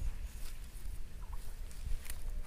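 Cast net being hauled in by its line through shallow pond water, with faint swishing of water over a low rumble. Two short, faint high notes sound about halfway.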